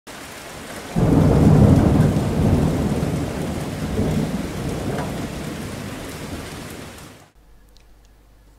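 Thunderstorm sound effect: steady rain hiss, then a loud clap of thunder about a second in that rolls on and slowly dies away, swelling again briefly near the middle, before the whole sound cuts off suddenly near the end.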